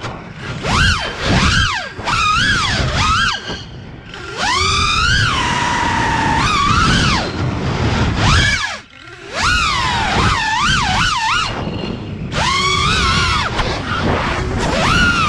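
Brushless motors and three-blade 5-inch props of an FPV freestyle quadcopter (Axisflying AF227 1960kv motors, Gemfan 51433 props) whining, the pitch sweeping up and down with each throttle punch. The pitch holds steady for a moment about six seconds in, and the sound drops away briefly at throttle cuts around four and nine seconds in.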